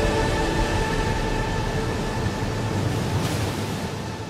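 Held notes of a sustained music drone, fading out about halfway through, over a steady rushing noise of a large breaking ocean wave.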